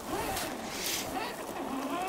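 Stock electric motor and geartrain of an Axial SCX10 II Jeep Cherokee RC crawler whining, the pitch rising and falling with the throttle as it crawls over a sand ridge.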